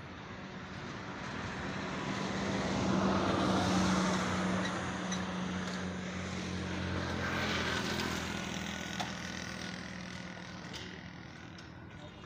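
A vehicle engine running with a steady low hum. It swells louder twice, about three to four seconds in and again near eight seconds, then fades.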